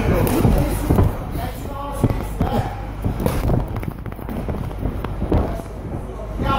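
Boxers' shoes thumping and shuffling on the ring canvas in a quick, irregular run of knocks, with voices shouting from ringside.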